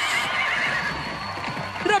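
Horse whinny sound effect, a wavering high call sliding down and trailing off over about the first second, over background music.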